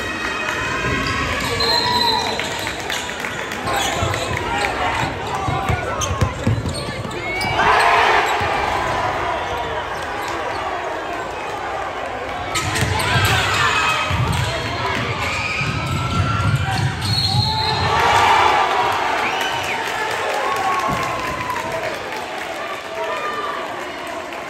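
Live game sound of high school basketball in a gym: a basketball dribbled on the hardwood floor, shoes squeaking, and crowd and player voices echoing in the hall.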